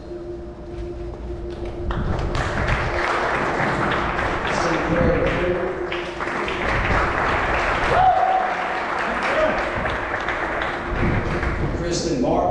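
Audience clapping, starting about two seconds in and running on steadily, with a few voices heard over it.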